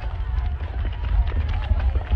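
Volcanic eruption sound effect: a deep, continuous rumble with dense crackling and popping throughout.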